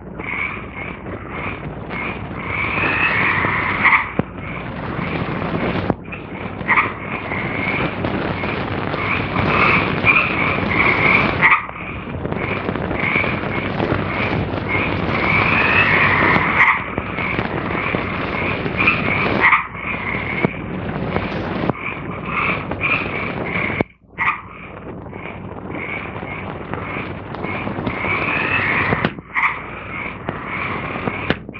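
Jungle sound effects on an old film soundtrack: a dense chorus of short, repeated croaking animal calls over heavy hiss. It breaks off briefly and suddenly several times, at the splices.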